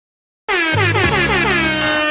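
Intro jingle with an air-horn sound effect: after half a second of silence, a loud rapid run of falling horn blasts over a steady held chord.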